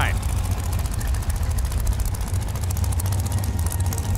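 Top Dragster race car engines idling at the starting line: a steady low drone with fine, rapid, even ticking on top.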